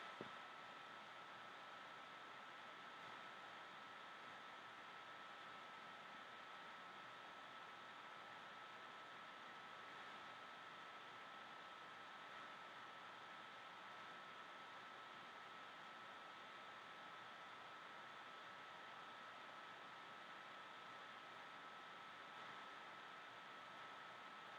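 Near silence: a faint steady hiss with a thin, constant high tone. No sounds of the drill or the work are heard.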